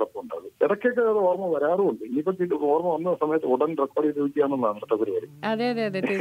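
Speech only: a voice talking continuously over a narrow, telephone-like line. A clearer, fuller voice takes over near the end.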